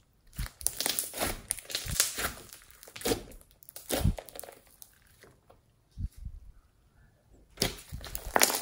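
Hands squeezing, pressing and stretching a large lump of glossy slime: a rapid run of small crackles and pops. The crackles thin out for a few seconds about halfway through, with a single thump, then come thick again near the end as the slime is pulled thin.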